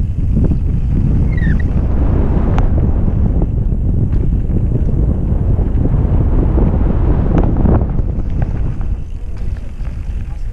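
Wind buffeting the microphone of a mountain-bike-mounted camera at speed, mixed with tyre noise on a dirt trail and a few sharp knocks from the bike over bumps. The rush eases near the end as the bike slows.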